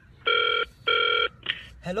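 Telephone ringing: one double ring, two short steady tones with a brief gap between them.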